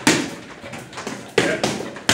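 Gloved punches smacking into boxing focus mitts: one sharp hit at the start, then another about a second and a half in, followed closely by a lighter one.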